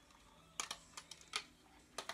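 Several light, sharp clicks and taps of fingers working at the catch of a plastic highlighter compact that won't open.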